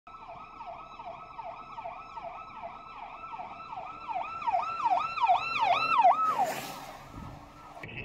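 Police vehicle's electronic siren in a fast rising-and-falling yelp, about two to three cycles a second. It grows louder as the vehicle approaches, then cuts off about six seconds in.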